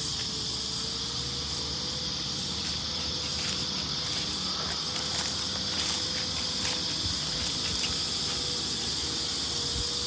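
Steady, high-pitched chorus of insects chirring without a break.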